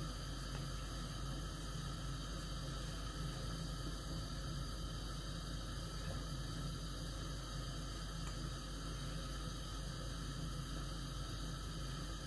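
Steady background hum and hiss, even throughout with no distinct events.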